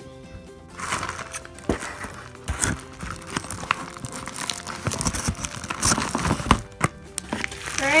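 A plastic bubble mailer crinkling and rustling as it is cut open with scissors and handled. Irregular clicks and knocks start about a second in and run over steady background music.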